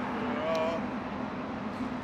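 City street ambience: steady traffic noise with a low hum, and a short voice sound about half a second in.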